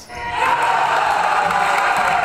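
A group of players cheering and shouting together at a made basket. The cheer builds over the first half second and then holds steady.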